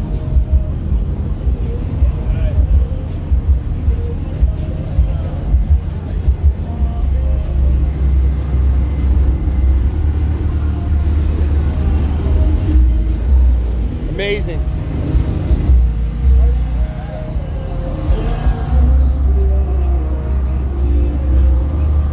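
Deep sub-bass from a car audio system's subwoofers playing music, a pulsing beat for the first few seconds and then long sustained bass notes, with people's voices in the background.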